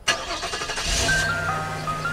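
A van's engine starts suddenly and keeps running with a steady low hum. From about a second in, an ice-cream-van chime melody of single stepped notes plays over it.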